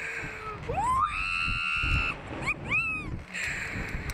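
A girl screaming on a slingshot thrill ride: a shriek that rises and is held for about a second, then a shorter squeal, with wind rushing over the microphone.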